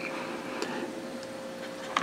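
Quiet room tone: a low background hiss with a faint steady hum.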